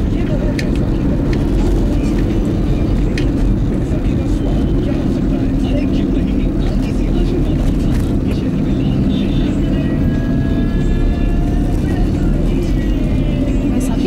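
Steady low road and engine noise inside the cabin of a Maruti Swift driving in city traffic, with faint higher pitched sounds partway through.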